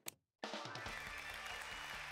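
A TV switched on with a short click; about half a second in, band music with drums and bass starts from it, the opening theme of a late-night talk show.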